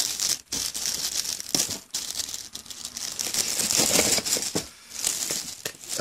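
Clear plastic bag crinkling and rustling as it is handled and pulled at around a boxed mouse, in short spells broken by brief pauses.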